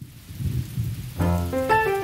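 Rain falling with a low rumble of thunder, a sound effect for a stormy scene; a little over a second in, keyboard notes begin a melody over it.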